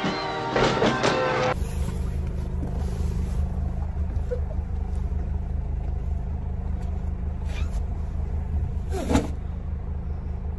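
Music for the first second and a half, then the steady low rumble of a car engine idling close to the microphone, with a brief louder sound about nine seconds in.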